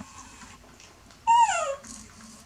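A baby macaque gives one short, high call that falls in pitch, about a second and a half in.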